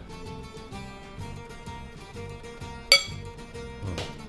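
Background music, with one sharp clink of a metal fork against a ceramic bowl about three seconds in.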